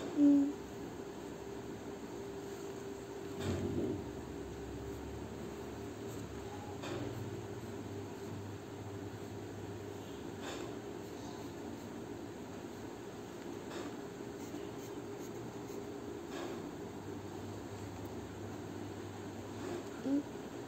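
Pencil drawing tally strokes on notebook paper: faint short scratches every three or four seconds over a steady low hum. A brief low, hum-like voice sound just after the start, and again at the end, is the loudest thing.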